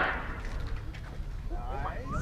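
A high-power rocket motor's roar, heard from far below, stops abruptly at the very start as the motor burns out, leaving a faint low rumble. A person's voice starts near the end.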